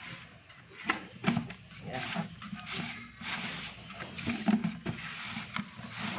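Plastic lid being pressed and worked down onto a plastic drum to seal it tight: plastic rubbing and creaking, with a few sharp clicks about a second in.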